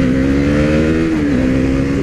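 Motorcycle engine pulling under power as the bike rides away, its pitch creeping up and then dropping at an upshift about a second and a half in, over a steady hiss of wind.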